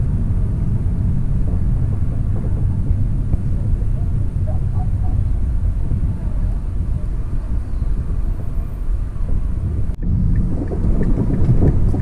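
Car interior noise while driving slowly in city traffic: a steady low rumble of engine and tyres. Near the end there is a brief sudden dropout.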